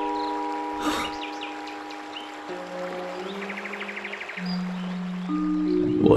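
Background score of long, soft held notes whose chords shift near the middle, with a brief rush of noise about a second in. Faint bird-like chirps and a quick, even trill sound over the music around three to four seconds in.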